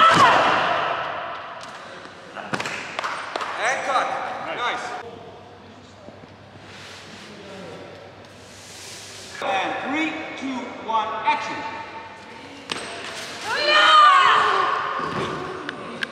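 Stunt fight take: a loud shout, then heavy thuds of bodies landing on padded crash mats, with further shouts and voices in a large, echoing hall.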